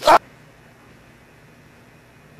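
A brief, loud cry that lasts only a fraction of a second and is cut off abruptly, followed by a faint, steady hiss.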